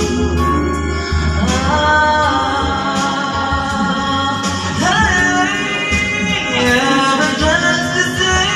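Karaoke: a person singing into a microphone over a backing track played through loudspeakers, the voice holding long notes that slide in pitch.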